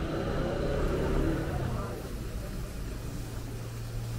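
Night-time street ambience: a low rumble with faint background voices, giving way about halfway through to a steady low hum as the street noise drops away.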